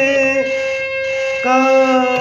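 Harmonium reeds sounding held notes of a song melody, with a voice singing along in smooth glides; a new note comes in about three-quarters of the way through.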